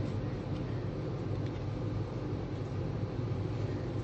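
Steady low background hum with a faint even hiss, without distinct clicks or ticking.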